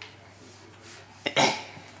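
A light click of handled plastic, then a short breathy puff of air about a second and a half in, as a toddler blows into the small plastic box of a harmonica instead of the instrument.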